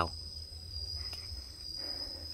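Insects droning in the forest: one steady, unbroken high-pitched tone.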